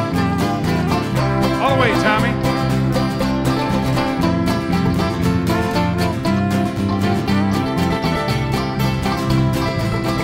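Irish ceili band playing an instrumental tune live, with fiddle and mandolin over strummed acoustic guitar, keeping a steady, even beat.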